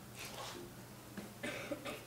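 A person coughing faintly twice over a low steady room hum.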